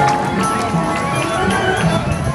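Marching band playing: brass and woodwinds hold steady notes over a regular drum beat.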